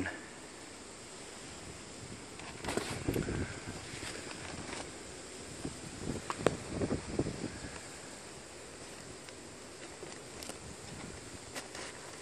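Faint wind noise on the microphone with a few soft rustles and knocks of handling as a small metal carburetor is set down on a plastic equipment cover: one cluster about three seconds in and another, with a sharp click, around six to seven seconds in.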